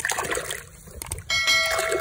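Water sloshing and splashing as hands swish and scrub a small toy in a basin of muddy water. About 1.3 s in, a short bell-like chime sound effect rings out over the water.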